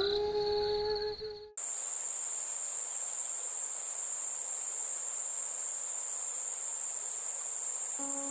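Background music holding a sustained note stops abruptly about a second and a half in, giving way to crickets chirring: a steady, unbroken high-pitched trill of a night ambience.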